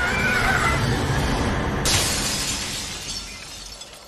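A woman's high wavering scream, then about two seconds in a window pane shattering as she crashes through it, the falling glass fading out over a low rumble.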